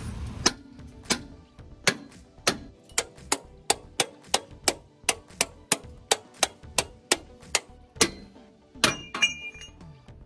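An even run of sharp knocks, speeding up over the first three seconds to about three a second, with two louder knocks near the end.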